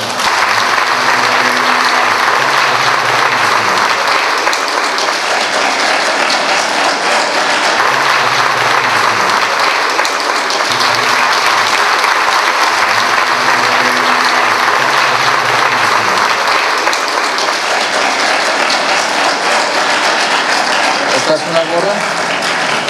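Audience applauding steadily and loudly throughout, as an award plaque is presented.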